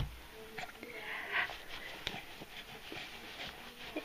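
Young baby making quiet, breathy sounds and a short faint coo.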